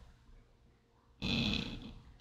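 Near silence, then about a second in a short breathy hiss from a person's mouth: a whispered or exhaled sound rather than a spoken word.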